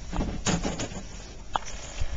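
A few knocks and scuffs of a person moving about on a sailboat deck, over a steady low rumble of wind on the microphone.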